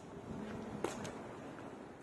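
Faint background noise with a single sharp click a little under a second in.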